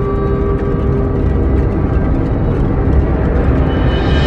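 Dark ambient background music: sustained tones held over a low, rumbling drone.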